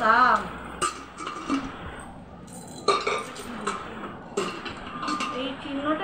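A new Shyam pressure cooker's metal lid and body clinking and knocking together as the lid is handled and fitted into the pot, several separate sharp clinks with brief ringing.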